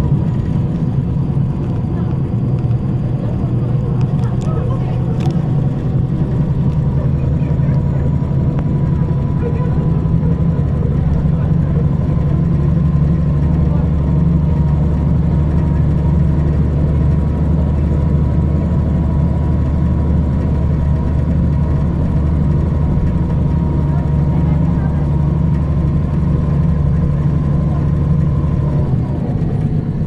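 MAN compressed-natural-gas city bus engine heard from inside the bus, running at a steady low drone with a faint steady whine above it.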